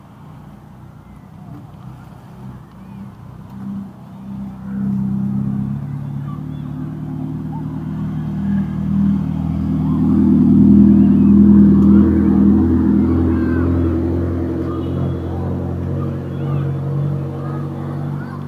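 Car engines running at low speed close by as cars crawl past. A low steady engine hum builds from about five seconds in, is loudest around the middle, then eases off.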